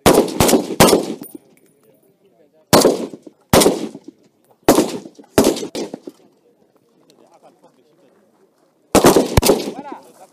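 Kalashnikov-pattern rifles firing single shots, each a sharp crack with a short echo, at uneven spacing. A quick three or four come at the start, about five more are spread over the next few seconds, then a pause of about three seconds before another quick bunch near the end.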